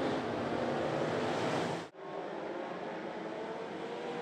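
Dirt-track race cars running on the oval, heard at a distance as a steady noisy drone. The sound cuts off abruptly about two seconds in and resumes slightly quieter with the next field of cars.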